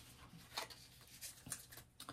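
Near silence: room tone with a few faint, soft clicks.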